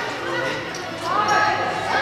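Players and spectators calling out in an echoing indoor soccer arena, with the thud of the ball being kicked on the turf.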